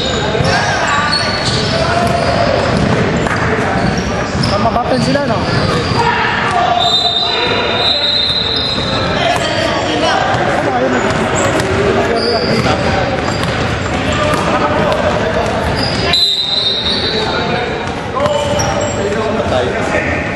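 Basketball bouncing on a hardwood gym floor amid the voices of players and onlookers, all echoing in a large gym hall.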